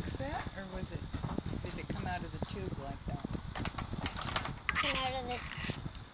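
Indistinct talk and babble from children's voices, with a high-pitched child's voice about five seconds in, over a low rumble.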